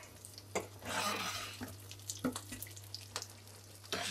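Sesame-crusted sea bream fillet gently frying in hot oil in a non-stick pan: a quiet, steady sizzle that swells briefly about a second in, with a few light clicks.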